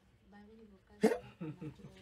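A man's voice in a short pause between phrases: a faint low murmur, then a short, sharp vocal sound like a hiccup about a second in, followed by a few soft fragments.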